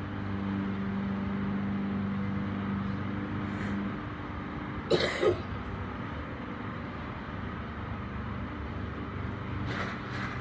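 Steady low mechanical hum with a droning tone that drops away about four seconds in, and a short two-part cough about five seconds in.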